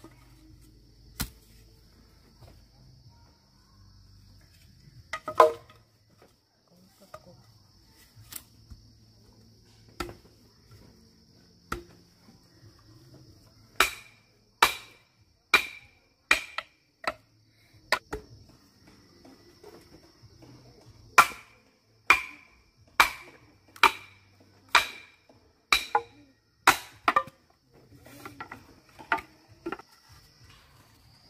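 A large steel chopping knife striking into bamboo, each blow with a short metallic ring. A few scattered strikes come first, then runs of steady chopping blows, a little more than one a second. A faint steady high-pitched hum sits in the background.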